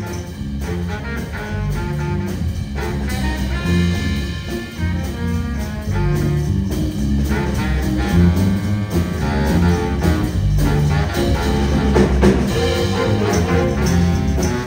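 A school jazz big band plays live: a full band of rhythm section and horns, getting somewhat louder over the first few seconds and then holding.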